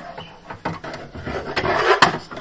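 Blue & Me unit's mounting bracket scraping and rubbing against the inside of a Fiat 500's rear side panel as it is pushed and hooked into place, with a few sharp clicks and knocks. The scraping gets louder through the second half.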